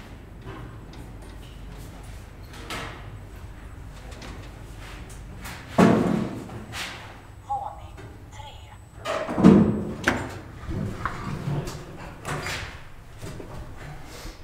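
Metal clanks and bangs from a 1929 ASEA traction freight elevator and its collapsible scissor gate, over a low steady hum. The two loudest bangs come about six and nine and a half seconds in, followed by a few lighter knocks.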